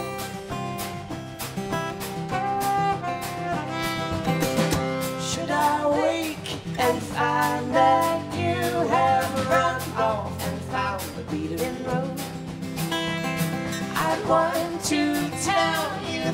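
Indie folk song played live on a strummed acoustic guitar, with sung vocals.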